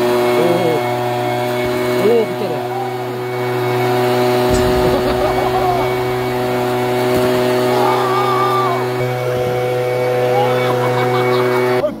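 Two-stroke backpack leaf blower, rigged as a snowball launcher, running steadily at high speed while it fires snowballs.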